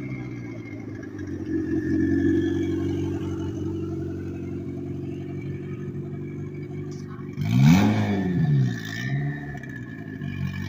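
Turbocharged Honda D16Y8 four-cylinder in a Civic coupe running at low speed as the car rolls in, then a sharp throttle blip about two and a half seconds from the end that rises and falls in pitch, followed by a smaller blip.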